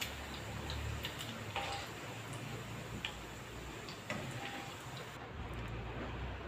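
Chorizo slices frying in hot oil in a frying pan: faint, scattered pops and ticks over a low, steady hum.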